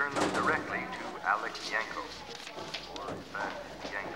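Indistinct chatter of many children's voices overlapping, with a few sharp knocks among it.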